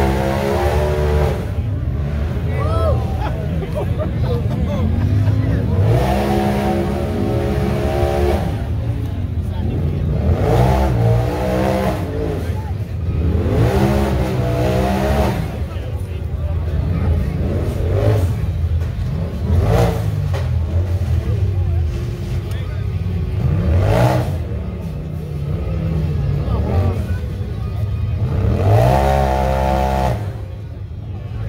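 A UTV's engine revs hard in repeated bursts, about eight in all, each rising and falling in pitch, as the machine works its way up a steep rock climb. A couple of sharp knocks come from the machine on the rocks.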